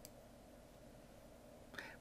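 Near silence: faint room tone in a pause of the narration, with a brief faint sound near the end just before speech resumes.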